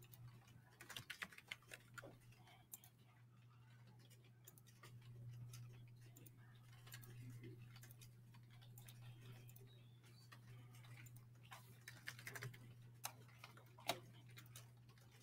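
Near silence: room tone with a steady low hum and scattered faint clicks, a small cluster about a second in and another near the end.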